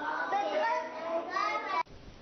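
A classroom of young schoolchildren talking and calling out together, a hubbub of children's voices that cuts off abruptly just before the end.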